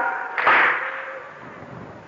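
A gathering of mourners beating their chests in unison (latm) between the reciter's lines: one collective slap a little under half a second in, dying away over about a second.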